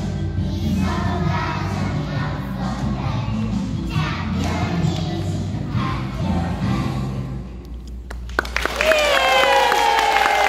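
A children's vowel song with a samba beat, sung by a group of young children over the music; the song ends about seven and a half seconds in. A knock follows, then audience applause with cheering that gets loud near the end.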